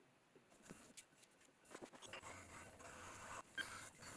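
Near silence with a few faint taps and handling sounds as a leather-hard clay bowl is set upside down on a metal wheel head and a spinner tool is placed on it. A faint low hum with soft scraping comes in about halfway through, with a sharper click near the end.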